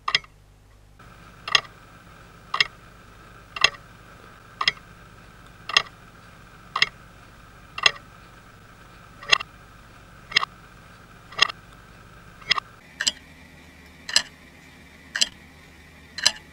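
Wall clock ticking loudly about once a second, the ticks a little uneven with one close double tick near the end, over a faint steady hum.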